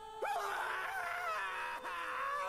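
A high, wavering voice wailing, starting about a quarter second in.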